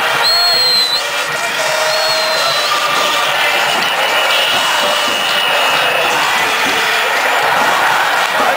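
Football crowd in the stands chanting and cheering together, a steady loud mass of voices. A high whistle sounds briefly near the start and again about two seconds in.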